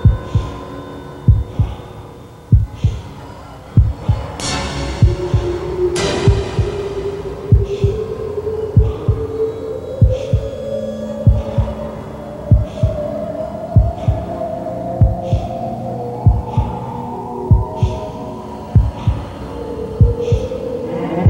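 End-credits soundtrack: a slow heartbeat-like double thump about every second and a quarter under a held tone that slowly rises in pitch, with two crashing swells of noise around four and six seconds in.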